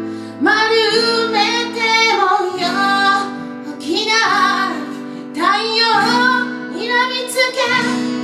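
A woman singing lead in a live band song, in sung phrases with short breaks between them, over acoustic guitar, electric bass and drums.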